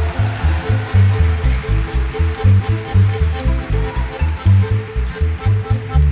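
Live Romanian lăutari band music: a violin leads over cimbalom, double bass and accordion, with the bass and chords keeping a fast, even pulse.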